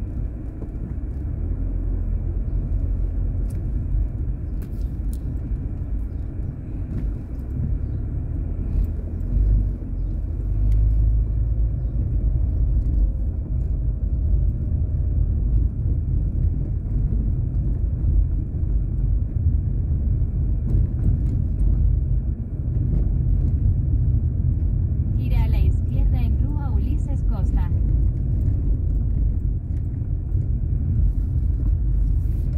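Low, steady rumble of a car's engine and tyres, heard from inside the cabin as it drives along a street. Near the end a brief higher, wavering sound cuts in over the rumble.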